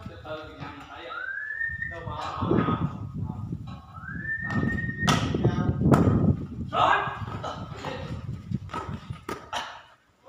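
Players shouting and calling to each other during a volleyball rally, with sharp hits of the ball in between, the loudest about six seconds in and two more near the end.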